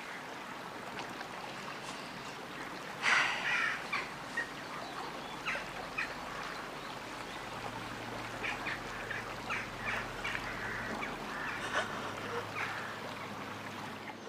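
Birds calling outdoors: one louder call about three seconds in, then short scattered calls through the rest, over a faint outdoor background.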